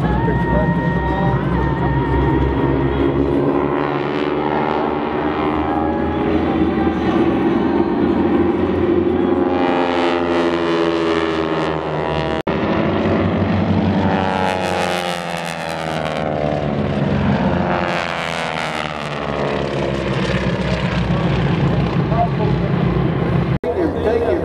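Radial piston engines of a formation of North American T-6 Texan aerobatic planes, droning loudly as they fly overhead, the sound rising and falling in pitch as the aircraft pass and manoeuvre.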